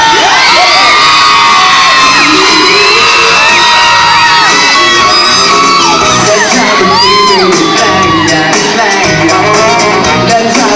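Loud live pop music over a stage sound system, with fans repeatedly letting out high-pitched screams and cheers that rise and fall over it.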